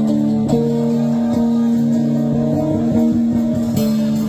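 Live rock band playing an instrumental passage with the guitar to the fore, over long held notes.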